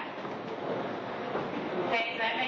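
Many feet stepping and shuffling together on a wooden dance floor, a steady clatter without a clear beat, with voices underneath.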